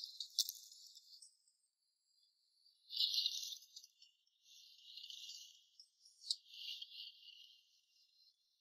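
Faint, thin swishes and splashes of hands moving through shallow paddy water while feeling for snails, in several irregular bursts, with two sharp clicks, one just after the start and one late on.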